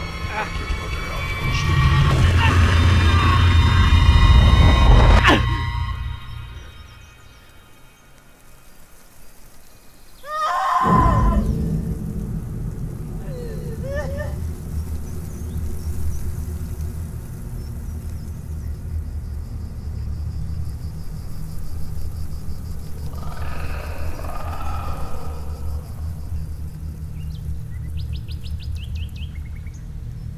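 Horror-film score and sound design: a loud, shrill swell of layered tones that cuts off suddenly about five seconds in. After a quieter stretch, a sudden low hit with warbling tones comes around ten seconds in and settles into a steady low drone.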